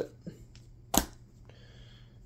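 A single sharp click about a second in, made while a black wallet is handled and put down.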